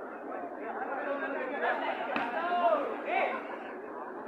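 Many voices chattering at once among the spectators, with one voice calling out louder a little past halfway.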